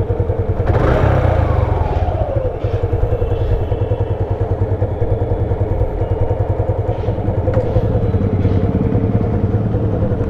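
Motorcycle engine running at idle. It is briefly revved about a second in, and its pitch falls back to idle over the next second and a half. Two light clicks come around seven seconds in, as the gear lever is worked.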